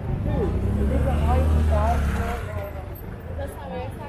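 A motorcycle engine running close by for the first couple of seconds and then fading away, over the chatter of people on the street.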